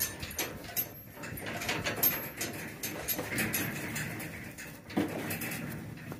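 A steel livestock gate clanking and knocking as it is held open, while a Gelbvieh bull walks through with scattered steps and shuffling, and a sharp knock about five seconds in.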